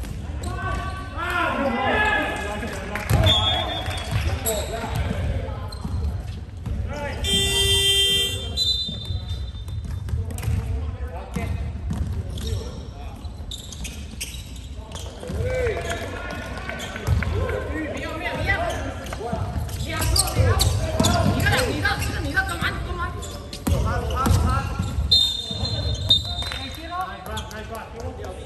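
Basketball game sounds in a large gym hall: a ball bouncing and players shouting on the court. A buzzer sounds for about a second around a quarter of the way in, and a referee's whistle blows twice near the end.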